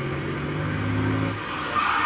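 Truck engine from a TV commercial, heard through the television's speakers in a room: a steady low drone that fades out about one and a half seconds in, with a higher tone coming in near the end.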